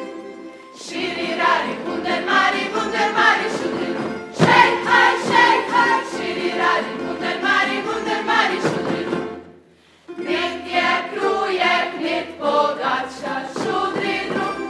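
A group of voices singing a Međimurje folk song in unison, accompanied by a tamburica band. The song goes in phrases, with a near-silent break shortly before ten seconds, after which the next phrase begins.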